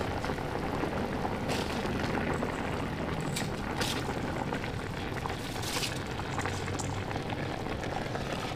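Large pot of mutton stock boiling steadily while soaked basmati rice is poured in from a steel bowl, with a few faint clicks along the way.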